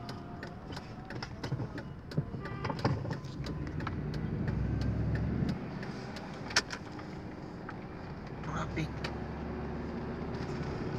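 Inside a moving car: low engine and road rumble that builds for a second or two midway through as the car accelerates through a turn, then eases off. Scattered small clicks and one sharp click just past the middle.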